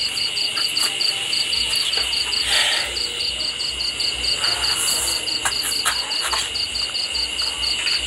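A chirping insect: an even, continuous run of short high-pitched pulses, about five a second, over a steady high whine, with a brief hiss about two and a half seconds in.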